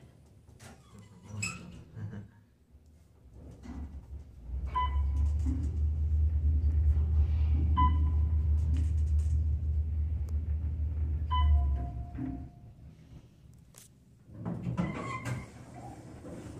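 Otis elevator car descending: a low rumble of the car in travel for about eight seconds, with a short beep at each floor passed, three beeps about three seconds apart, then a lower tone as it arrives. The doors slide open near the end.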